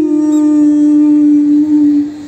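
A young female Carnatic vocalist holding one long, steady sung note. It trails off at the very end.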